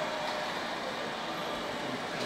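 Steady, even background hiss of room noise, with no distinct events.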